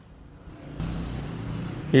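A rushing noise with no clear pitch, swelling for about a second and then cutting off sharply.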